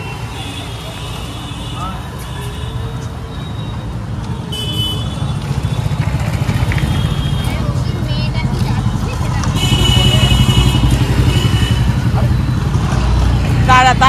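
Street traffic with motorcycle and scooter engines running close by. It grows louder about ten seconds in and again near the end, with brief high tones over it.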